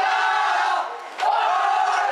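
A huddle of teenage boys shouting a victory chant together, in two long unison shouts with a short break just before a second in.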